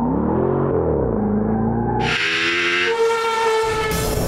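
Formula One car's V6 turbo engine running at speed: its note rises and falls over the first second, then settles into a steady high whine. About halfway through, a brighter engine sound cuts in abruptly.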